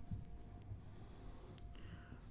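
Faint strokes of a marker pen writing on a whiteboard, with a brief squeak of the tip in the second half.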